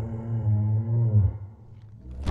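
Low, drawn-out bellowing call of a computer-generated Brachiosaurus, wavering in pitch and fading out about a second and a half in.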